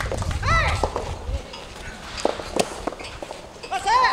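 A player's short shouted calls, one about half a second in and another at the very end, with two sharp knocks a few tenths of a second apart in between.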